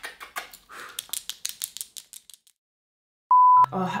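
A rapid, irregular run of sharp clicks for about two and a half seconds, then a moment of silence and a short, steady, high beep just before a voice comes in.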